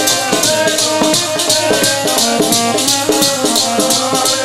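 Kirtan accompaniment playing between sung lines: a stepping melody of held notes over a quick, even rattling rhythm of about four strokes a second.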